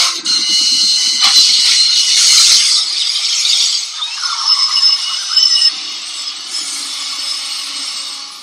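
Steam locomotive's brakes slammed on, its locked driving wheels screeching on the rails in a loud, shrill squeal. It starts suddenly and eases off over the last couple of seconds.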